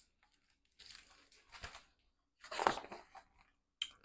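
Paper rustling as a picture book's page is handled and turned: two short bursts, about a second in and again around three seconds, with a brief third one near the end.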